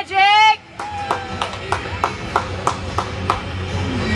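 Rink sound-system music with a steady beat of sharp hits, about three a second, after a brief loud wavering pitched sound near the start.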